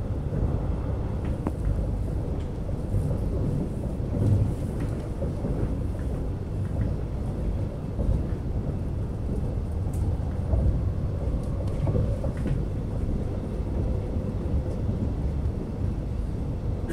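Alstom X'Trapolis electric suburban train running, heard from inside the carriage: a steady low rumble of wheels on track with a few faint scattered clicks.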